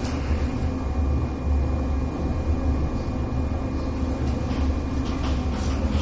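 Steady low room hum with a thin, steady high whine above it, and a few faint ticks near the end.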